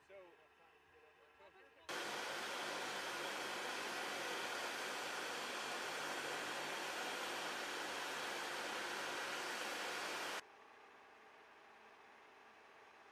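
Loud, steady mechanical roar with a low hum under it. It cuts in abruptly about two seconds in and cuts off just as abruptly about two seconds before the end, leaving a quiet steady background.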